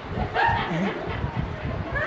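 A short, high-pitched human yelp about half a second in, with a falling glide, over low murmuring voices.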